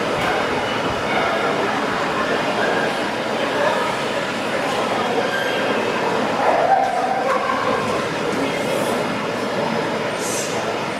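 Steady murmur of a crowd in a large indoor hall, many voices blending into one even din.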